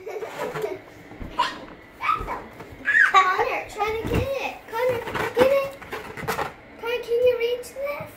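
Young children's voices calling out and vocalizing in short bursts during play, high-pitched and without clear words.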